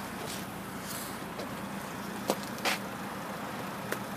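A BMW Z3 idling with a steady low hum, with two brief taps a little past halfway.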